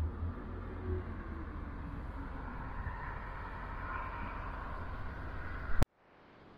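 Road traffic passing on a nearby street: a steady low rumble with tyre and engine noise that swells a little through the middle. It stops dead with a sharp click just before the end.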